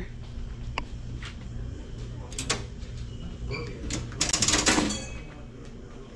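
Indoor room tone with a low steady hum, a few light clicks, and a brief rustling burst about four seconds in.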